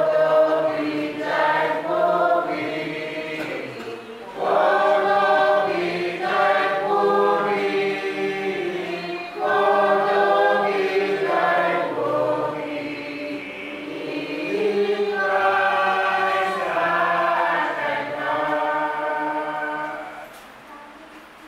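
A church congregation singing a hymn together in long, held phrases, with short breaks between lines. The singing stops at the very end.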